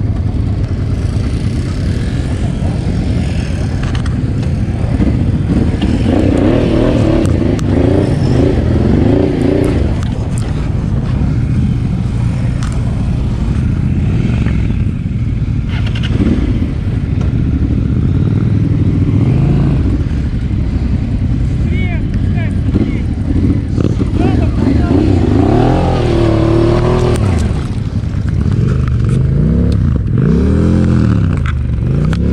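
Honda Transalp motorcycle engine running at low speed in a ride-by-the-throttle manoeuvre, with the revs rising and falling several times: a longer run of throttle work about six to ten seconds in, again near twenty-five seconds, and once more at the very end.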